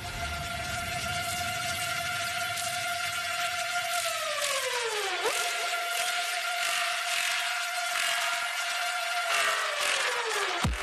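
Drum and bass mix in a breakdown with the beat and bass pulled out: a held synth tone over a hissing wash. About halfway through, the tone's pitch sweeps down and then snaps back up, and near the end it starts to dive again.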